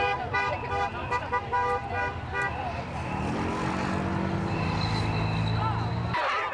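Car horns honking in short, quick toots, about three a second, for the first couple of seconds. A low steady hum comes in about halfway through and holds until the sound cuts off.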